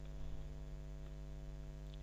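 Faint steady electrical mains hum with a stack of even overtones, picked up by the recording chain between narrated phrases.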